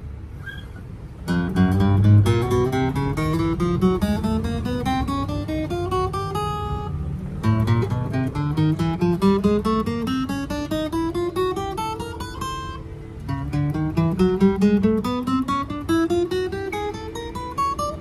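Yamaha FG-301B steel-string acoustic guitar played as a fretboard test: single plucked notes climbing fret by fret up the neck, in three rising runs. The notes ring cleanly with no fret buzz, which the seller takes as a sign that the frets are undamaged and level.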